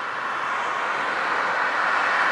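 Road traffic noise from a passing motor vehicle, a steady rushing sound that grows gradually louder as it approaches.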